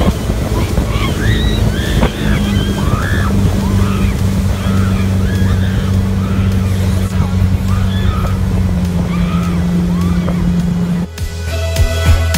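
Motorboat engine running steadily with water rushing and splashing from the wake, while voices shout and whoop over it. The engine hum and water noise cut off abruptly about eleven seconds in.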